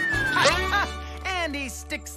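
Cartoon sound effects: a slide-whistle tone falling in pitch ends in a crash of a landing about half a second in. A character's cries follow, rising and falling in pitch, over background music.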